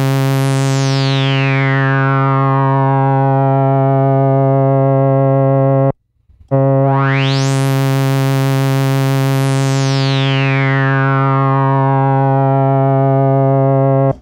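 Moog Sub 37 analog monosynth playing a sustained low note twice, with a resonant filter sweep shaped by its multi-stage filter envelope. On the first note the bright resonant peak falls away over a few seconds. After a short break about six seconds in, the second note's peak rises slowly, holds at the top, then decays back down.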